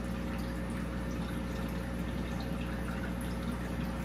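Steady low hum with water trickling and dripping: aquarium equipment running in a fish room, unchanging throughout.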